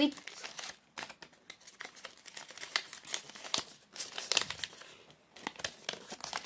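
Folded paper fortune teller handled and flexed in the hands, its paper crinkling and rustling in a run of short, uneven crackles.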